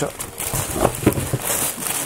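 Packaging being handled and opened by hand, rustling and crinkling with scattered small clicks and knocks.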